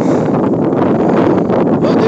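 Wind buffeting the microphone: a loud, steady rumbling rush.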